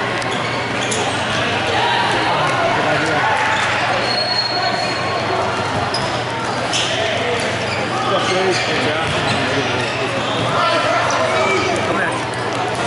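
Futsal ball being kicked and bouncing on a hardwood sports-hall floor, short sharp knocks scattered through a steady hubbub of players' and spectators' voices echoing in the hall.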